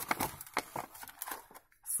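Clear plastic blister packaging crinkling and clicking as it is handled, a run of short irregular crackles.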